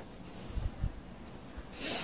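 A short breath drawn in through the nose near the end of a pause in speech, with a few faint low bumps about a second earlier.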